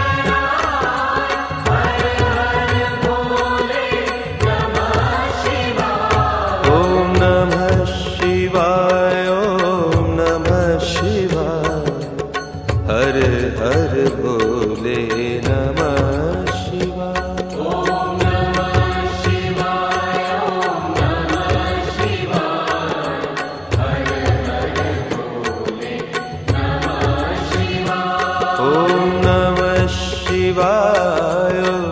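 Indian devotional song: a voice sings a melody with long, bending notes over a steady drum beat.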